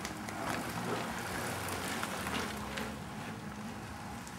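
A group of road racing bicycles riding past close by, with wind noise on the microphone, a steady low hum underneath and scattered light clicks; it swells a little as the riders go by.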